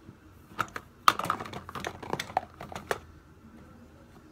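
A quick run of small clicks and taps, a dozen or so between about half a second and three seconds in, from hands rummaging among plastic makeup items in a wire-mesh organizer basket close to the microphone.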